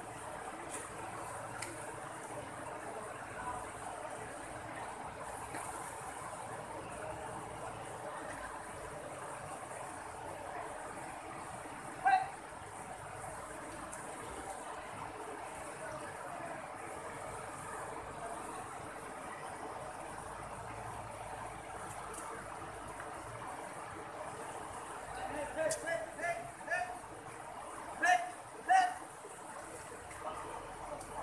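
River water running steadily over rocks in shallow rapids. People's voices break in briefly: one loud call about twelve seconds in and several short loud calls near the end.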